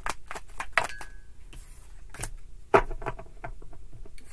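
Tarot cards being shuffled by hand: a run of irregular soft clicks and snaps of card against card, with one sharper tap a little under three seconds in.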